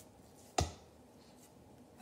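A single short knock about half a second in, a dull thud with a sharp click on top, as a ball of beet dough drops into a glass bowl.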